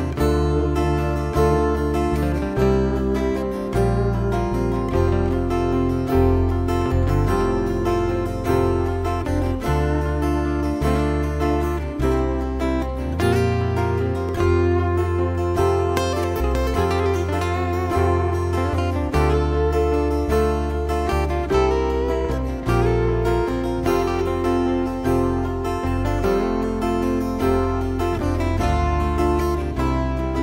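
Steel-string acoustic guitar solo: a melody picked over sustained chords, with no singing.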